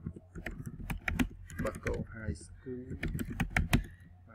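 Typing on a computer keyboard: a quick, irregular run of key clicks as two short lines of text are entered, the hardest strokes near the end.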